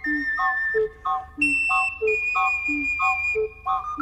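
Instrumental music: an ocarina plays a high melody in long held notes, stepping up once a little before halfway. Below it runs a bouncing accompaniment that alternates a low bass note with a short chord, one pair roughly every 0.6 s.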